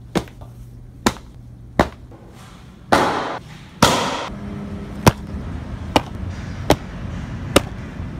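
A series of sharp clicks or knocks, roughly one a second. Two short rushing noises come about three and four seconds in.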